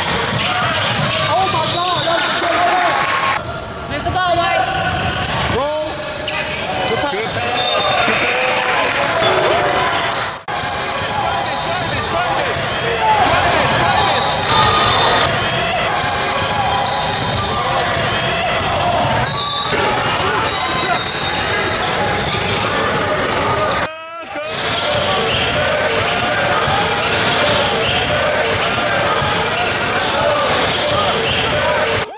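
Live game sound in a gymnasium: a basketball bouncing on the hardwood court amid indistinct voices of players and spectators, echoing in the hall. There are short high-pitched chirps, and the sound breaks off abruptly twice, about ten seconds in and again near 24 seconds, where one game clip cuts to another.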